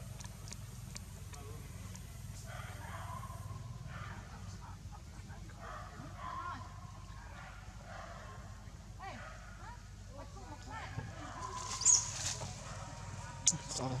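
Outdoor ambience: faint distant voices and short, scattered animal calls over a steady low hum, with a few sharp clicks near the end.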